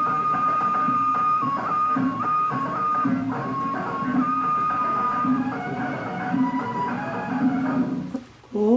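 Instrumental interlude of the song's backing music: a melody of long held notes stepping from one pitch to the next over a steady rhythmic accompaniment.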